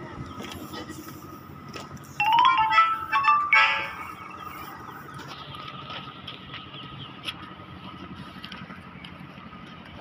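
A short electronic melody of stepping notes sounds for about two seconds, a couple of seconds in, over a steady background of construction-site machinery with a constant high whine.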